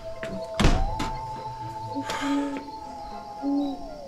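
A door bangs shut about half a second in, over an eerie held music drone that glides up at the start and slides down near the end. Two short low hoots, like an owl's, come in the middle and near the end.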